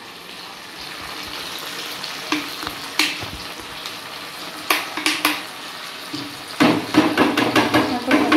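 Chopped vegetables frying in oil in a wok with a steady sizzle, and a few sharp knocks of utensils against the pan. A voice comes in near the end.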